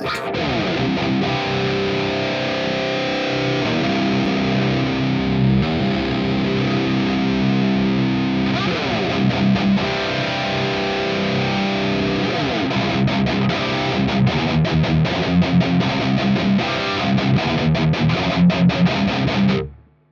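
Heavily distorted electric guitar tuned to drop C, played through an amp-capture preamp and the MIKKO2 cab simulator, playing ringing chords and then tight palm-muted chugs. It stops abruptly near the end. The tone shifts a couple of times as the blend of the three cab mics is adjusted, with the 121 ribbon mic being turned down.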